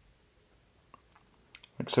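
A quiet room with a few faint, short clicks about a second in, then a man starts speaking near the end.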